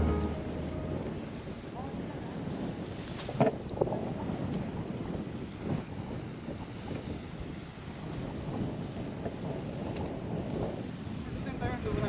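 Steady wind noise on the microphone over the wash of choppy sea against the jetty, with a few faint knocks.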